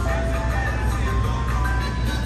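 An ice cream truck's jingle playing a simple tune of held notes over a steady low rumble of street traffic.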